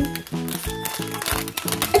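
A foil-lined plastic blind-bag packet crinkling as it is torn open by hand, over background music with a steady beat.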